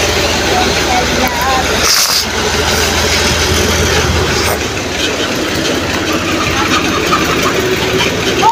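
A vehicle engine running steadily, heard as a continuous low rumble.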